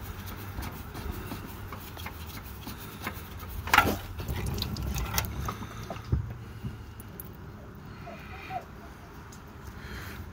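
A spin-on oil filter being unscrewed by hand and pulled off, with rubbing and small clicks and one sharper knock about four seconds in, while used oil runs out of the filter mount.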